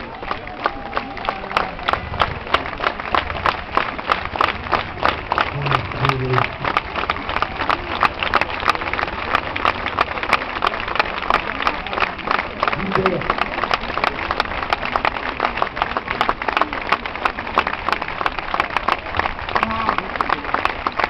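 Crowd applauding: many hands clapping, with sharp claps standing out several times a second. The applause builds over the first couple of seconds and then stays steady.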